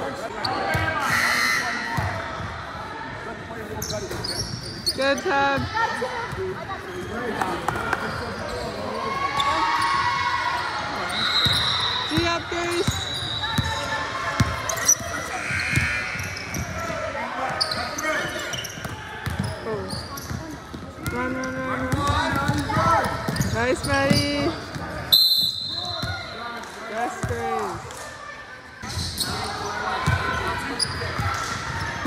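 A basketball bouncing on a hardwood gym floor during play, with players and people courtside calling out.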